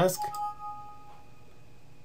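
Windows system alert chime of two overlapping notes, the higher one entering just after the lower, ringing out within about a second. It sounds as a Microsoft Access warning dialog pops up asking to save the table first.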